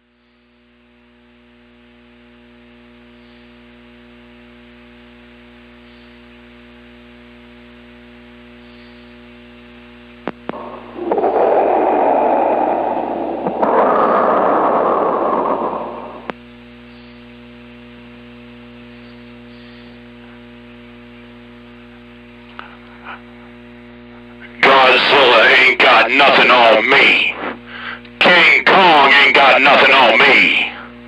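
CB radio receiver audio: a steady hum and hiss fades in, then a loud burst of noise comes over the channel about eleven seconds in and lasts some five seconds. Near the end, loud, distorted voices of stations transmitting break in and out.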